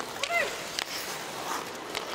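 Ice hockey arena ambience: a steady crowd hiss with a few sharp clicks, and a brief voice about a quarter second in.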